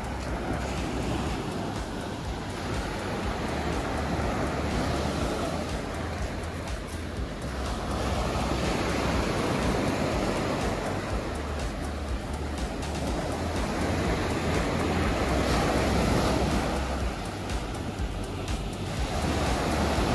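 Ocean surf breaking on a beach: a steady wash that slowly swells and eases as the waves come in.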